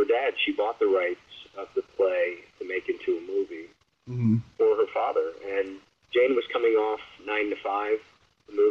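Only speech: a man talking in an interview, with one short pause about four seconds in.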